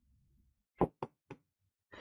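Three quick light knocks or taps on a hard surface, about a quarter second apart, starting near the middle; the first is the loudest.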